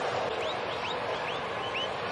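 Steady murmur of a ballpark crowd. From about half a second in, a run of about six short, faint, high chirps rises in pitch, each a quarter second or so after the last.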